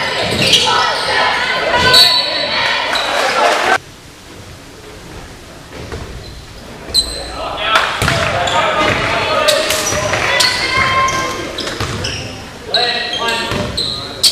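Sounds of a basketball game in a school gym: voices of spectators and players with a basketball bouncing on the hardwood floor, echoing through the hall. The sound drops suddenly about four seconds in and picks up again past the middle.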